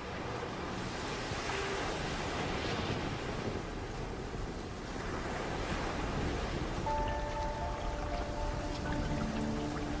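Rough sea: storm waves churning and breaking in a continuous rushing noise that swells and ebbs, with soft music underneath. Held music notes come in about seven seconds in.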